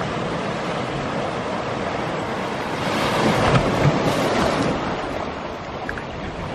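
Small sea waves washing onto the sand and boulders of a small cove. One wave swells louder about three seconds in and then drains away.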